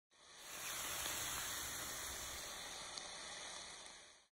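Hissing sound effect under an animated logo reveal, fading in over the first half second, holding steady, then fading out near the end, with a faint tick about three seconds in.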